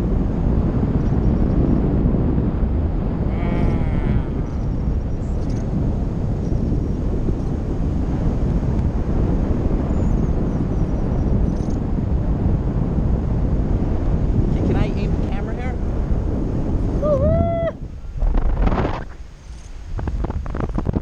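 Wind rushing over a camera microphone in flight under a tandem paraglider: a steady low roar of buffeting. A voice calls out briefly a few times, most clearly near the end, when the wind noise also drops away for moments.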